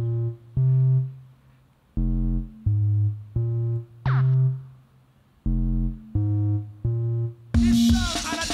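A computer-generated jungle tune synthesized live in Overtone. Short, low synth notes about half a second each play in phrases of three or four with brief pauses between them. Near the end the full drum-and-bass beat with drums comes in.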